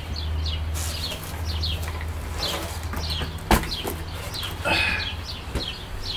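Small birds chirping repeatedly in short, falling chirps, over a low steady hum. A single sharp click about three and a half seconds in, and a brief rustle near the end as gear is handled.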